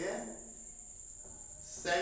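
Whiteboard marker writing on the board: faint scratchy, squeaky strokes, with a brief louder burst near the end.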